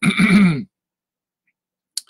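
A man's short voiced hesitation sound, about two-thirds of a second long, with a single brief click near the end.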